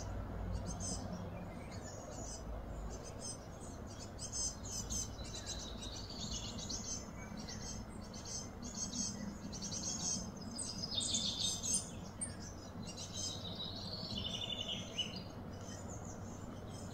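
Wild birds chirping and trilling in quick repeated calls, loudest about eleven seconds in, over a steady low hum.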